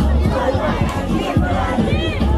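A crowd shouting and cheering over loud music with a deep, thudding bass beat.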